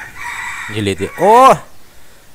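A man's voice: a short word, then a loud drawn-out call about a second in that rises and falls in pitch.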